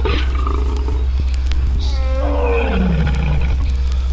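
A roar-like call that slides down in pitch for about a second, starting about halfway through, over a steady low hum.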